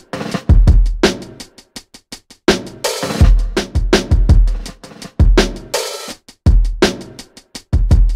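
Programmed boom-bap hip-hop drum pattern played back on its own: kick drums with long deep tails and sharp snare hits in a repeating loop.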